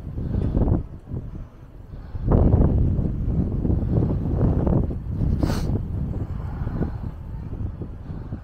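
Wind buffeting the microphone in uneven gusts, a low rumble that eases off about a second in and comes back stronger about two seconds in.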